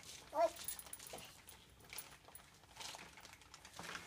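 A toddler's short, rising vocal sound about half a second in, then faint scattered taps and rustles.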